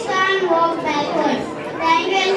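A boy's voice into a microphone, speaking without pause.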